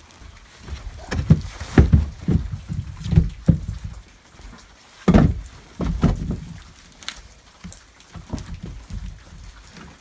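Split firewood being handled and pulled from a stacked pile: irregular knocks and thumps of logs against one another, the loudest about five seconds in.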